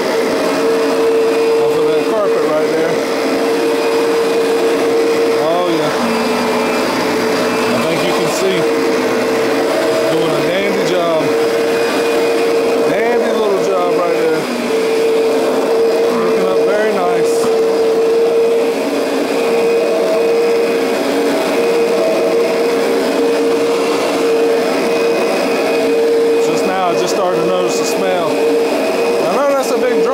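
Kirby Avalir G10D upright vacuum cleaner running on a rug, its motor giving a steady humming tone over a rush of air.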